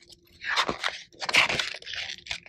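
Paper pages of a picture book rustling and crinkling as they are handled and turned, in two rough bursts.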